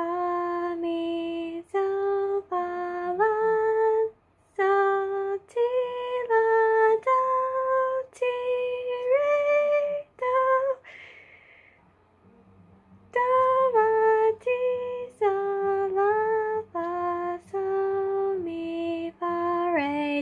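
A girl singing solfège syllables unaccompanied, one held note per syllable, skipping between notes of the scale as well as stepping. She stops for about two seconds around the middle, just after a short breathy sound, then carries on singing.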